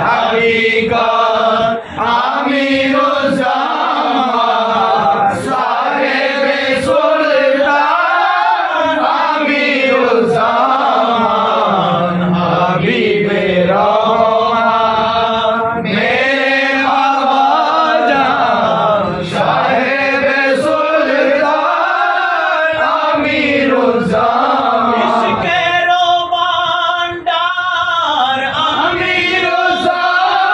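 A group of men chanting an Urdu devotional song together, their voices held in long notes that bend up and down in pitch.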